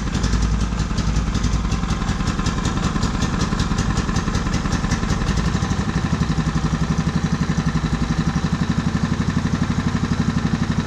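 Small petrol engine of a large-scale RC MAZ-537 model idling just after starting, with a rapid, even beat. About five and a half seconds in its pitch drops and the beat becomes more pronounced.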